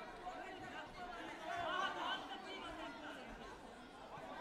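Indistinct chatter of many overlapping voices from spectators and coaches, echoing in a large sports hall.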